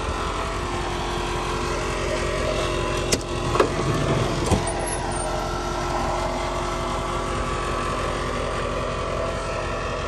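Steady hum of the Chevrolet Kodiak ambulance's engine idling. About three seconds in comes a series of clicks and clunks as the side entry door of the box is unlatched and swung open.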